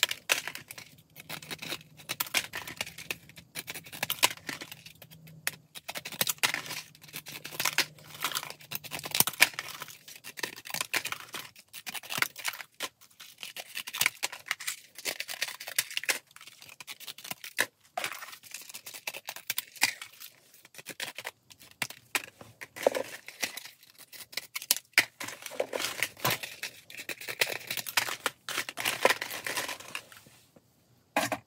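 Scissors snipping repeatedly through thin cardboard press-on nail packaging, many short quick cuts mixed with the rustle and crinkle of the card packs being handled. The scissors are damaged but still cutting.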